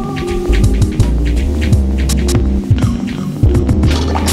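Lo-fi boom-bap hip-hop beat: deep, held bass notes under drum hits, with a melodic line that bends in pitch about halfway through.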